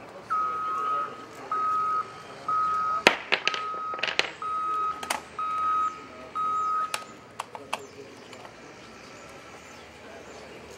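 A vehicle's reversing alarm sounds seven steady, evenly spaced beeps, about one a second, then stops. Several sharp knocks come in among the later beeps.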